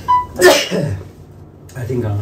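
A man sneezes once: a short catch of breath, then the loud sneeze about half a second in, fading within half a second.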